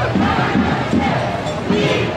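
A crowd of protesters chanting and shouting together, many voices at once.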